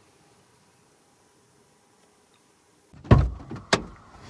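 Near silence for about three seconds, then a heavy thump and a sharp knock: the cab door of a 2010 Ford F-150 shutting.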